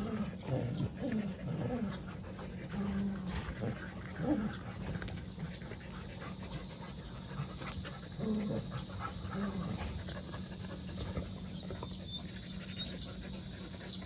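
Jindo dogs panting, with several short dog calls sliding down in pitch in the first four seconds and again about eight and nine seconds in.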